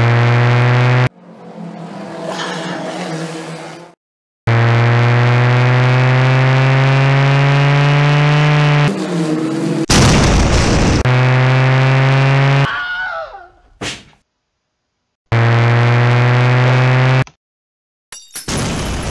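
Added sound effects of a race car engine running at a steady pitch in several separate stretches with abrupt cuts between them, one stretch creeping slowly up in pitch. A loud crash hits about ten seconds in.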